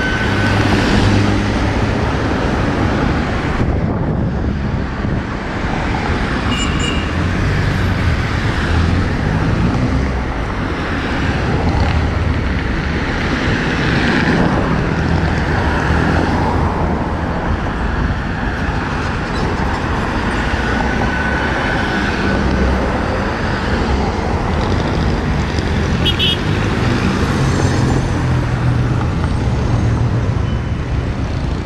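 Steady road traffic at a busy multi-lane avenue intersection, with car engines and tyres passing close by one after another.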